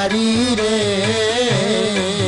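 Sikh shabad kirtan: ragi singers holding a long, wavering melodic line without distinct words, over a steady harmonium accompaniment.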